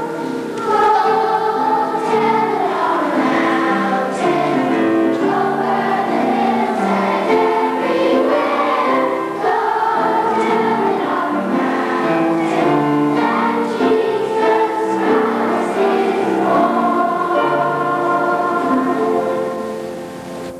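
Children's choir singing together, with held notes that change step by step; it grows quieter near the end.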